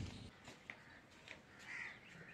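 House crow cawing faintly near the end, against quiet outdoor background.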